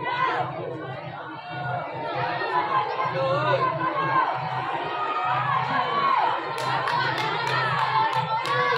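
A crowd of schoolchildren chattering and shouting in the stands, with some cheering. Near the end comes a run of sharp clicks.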